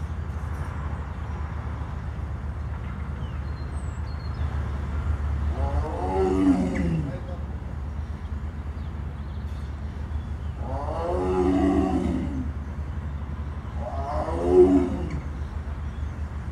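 A caged big cat calling three times, each a drawn-out call that falls in pitch, the middle one the longest. A steady low hum runs underneath.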